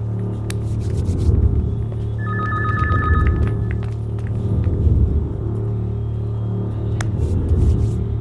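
Low, steady film background score with a brief electronic telephone ring about two seconds in, lasting just over a second.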